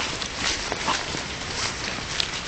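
Brisk footsteps through grass and fallen leaves, with rustling and irregular knocks every few tenths of a second.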